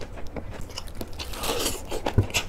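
Close-miked chewing of crunchy, freshly made napa cabbage kimchi: a run of wet crunches and bites, with a longer hiss about a second and a half in.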